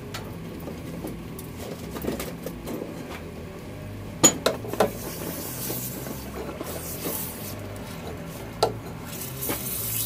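Hot 52100 steel blade quenched in fast quench oil, with the oil sizzling and hissing as it flashes; the hiss grows louder in the second half. Sharp metallic clanks of tongs and blade against metal come a few times, the loudest about four seconds in.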